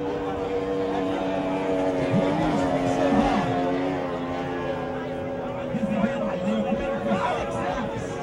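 Racing powerboat engines running flat out, a steady drone of several held tones that bend slightly in pitch, with people chattering close by.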